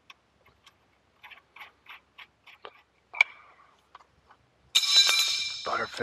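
Small metal clicks, about three a second, of a crescent wrench being worked on a threaded metal hose fitting, with one sharper click, then a loud high-pitched metallic screech lasting about a second near the end.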